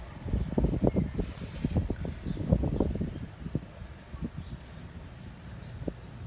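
Felt-tip marker scratching across a painted metal beam in short, quick strokes, in two bursts over the first three and a half seconds, then a few single ticks.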